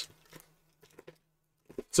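A few faint, scattered ticks and rustles of cardboard trading cards being turned over in the hand, over a faint steady low hum.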